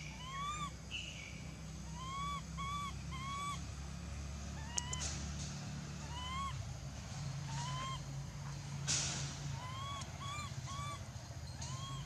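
A baby long-tailed macaque giving a dozen or so short, high coo calls that rise and fall, some in quick runs of three. A low steady hum runs underneath.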